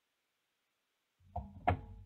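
Two short knocks close together over a brief low rumble, starting a little past halfway, like a microphone or desk being bumped.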